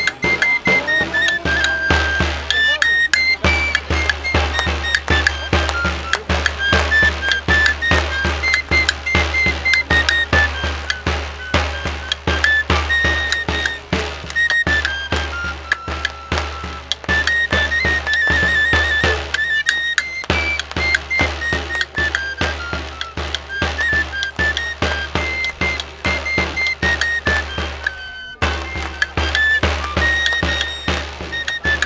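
One player on a three-hole pipe (gaita rociera) and tabor (tamboril) at once: a high flute melody of held and stepping notes over a steady beat on the drum. The music breaks off briefly near the end, then goes on.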